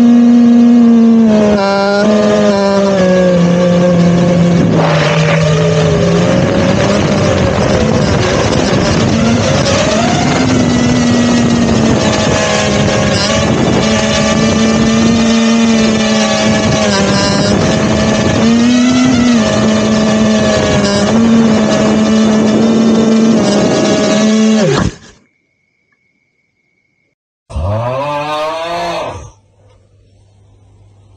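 FPV quadcopter's brushless motors and three-blade propellers whining loudly right next to the on-board camera, the pitch rising and falling with the throttle. The whine cuts off suddenly; after a short silence the motors spin up once more with a steeply rising whine for about a second and a half, then stop.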